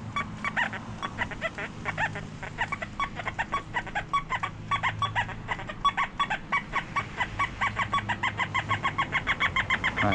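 XP Deus metal detector in pitch-tone mode chattering with a rapid run of short warbling beeps, about four to five a second, growing more regular toward the end, over a low steady hum. The chatter is electromagnetic interference drifting back after a frequency scan, which makes the pitch tones unusable.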